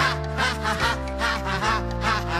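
Upbeat children's song: a voice sings a quick run of short "ah ah ah" syllables, about four a second, over a steady backing band.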